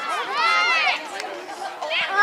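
Voices at a youth soccer match: one long, high shout about half a second in, with chatter from spectators and players around it.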